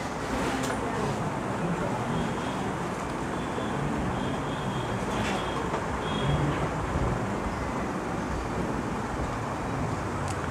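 Steady background noise in a room, with faint, indistinct short sounds over it and no clear speech.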